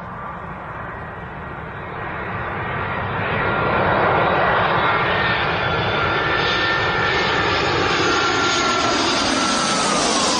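Airbus A320 airliner on approach with gear down, its turbofan engines growing louder as it comes in low. A rushing roar is overlaid by a steady high whine, and the whine drops in pitch near the end as the aircraft passes.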